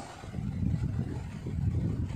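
Low, uneven rumble of background noise with no clear pitch.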